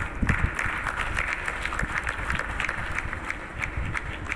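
Audience applauding steadily: many hands clapping at once.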